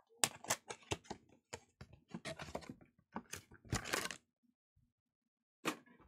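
Crinkling, crackling and tearing of packaging as a sealed booster box of trading card packs is opened and handled: a run of sharp crackles and rustles, a longer tearing sound just before four seconds in, then a short quiet and one last click near the end.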